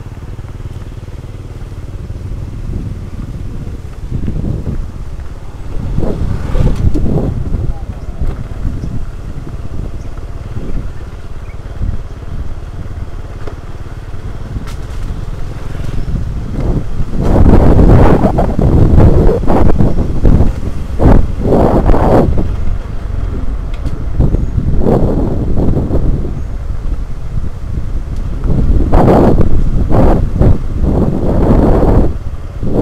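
Motorcycle engine running as the bike rides along a rough dirt track, with wind buffeting the microphone in gusts that grow louder from about halfway through.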